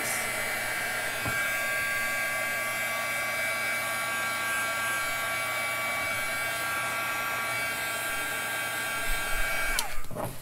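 Handheld embossing heat gun blowing a steady rush of air with a high-pitched whine. It is switched off near the end, and its whine falls away as the fan spins down.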